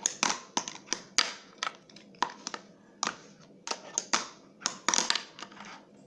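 A fingerboard's deck and wheels clacking and knocking against a wooden desk and a plastic jar used as a ledge during trick attempts: a run of irregular sharp clacks with short scrapes between them.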